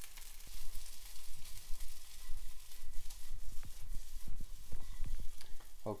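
Egg fried rice sizzling in a frying pan on the heat, a steady hiss, with scattered soft low knocks.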